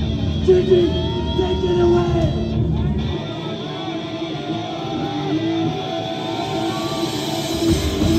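Heavy metal band playing live, heard from the audience. About three seconds in, the drums and bass drop out and leave the electric guitars playing on their own. The full band comes back in near the end.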